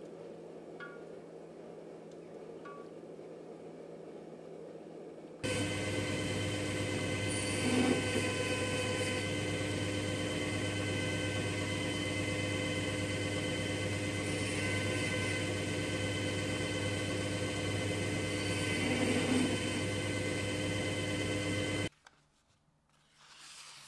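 A hot steel axe head settling in quench oil with faint ticks and crackles, then from about five seconds in a belt grinder running steadily, its motor and belt giving a held hum of several tones, swelling louder twice as the axe is pressed to the belt.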